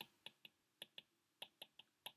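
Faint, small clicks of a stylus tapping a tablet screen while handwriting, about nine ticks at irregular spacing.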